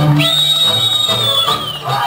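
Romanian folk dance music with one long, high whistled note that slides up about a quarter second in, holds, and fades away near the end.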